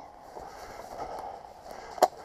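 A person walking through long grass and brush: a steady rustle of vegetation against legs and feet.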